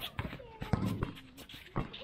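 Basketballs bouncing and feet landing on a hard court floor: several irregular sharp thuds, with faint voices in the background.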